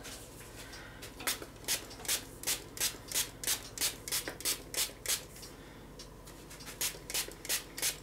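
Trigger spray bottle misting water onto a paper napkin to dampen it: quick repeated squirts, about three a second, with a short pause just after the middle before the spraying resumes.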